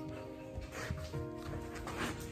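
Soft background music with sustained notes, and a few short sounds from a small dog as it is played with by hand.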